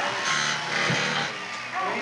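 Electric carving knife running briefly, a steady motor buzz, under family chatter.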